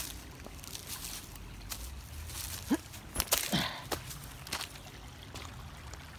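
Shallow creek trickling over stones, with scattered crunching footsteps on a gravel bank. Two brief low vocal sounds come about three seconds in.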